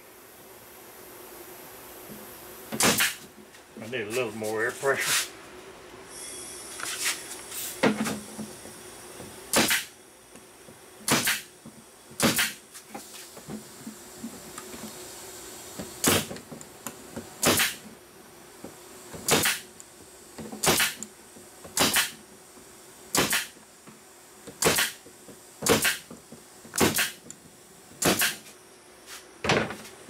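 An 18-gauge air brad nailer/stapler firing brads one at a time into the wooden top bars of beehive frames, about sixteen sharp shots, coming every second or so through the second half.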